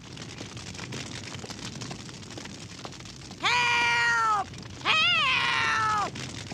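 An elderly woman's voice crying out twice from inside the burning house, two long, high-pitched, drawn-out calls of "Help!", over a steady background hiss. The cries come about three and a half and five seconds in, each rising and then falling away.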